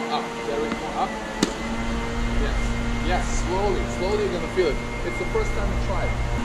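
A tennis ball struck once by a racket, a single sharp pop about a second and a half in, over indistinct voices and a steady low hum that sets in just after the hit.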